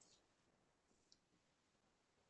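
Near silence, with one faint click about a second in.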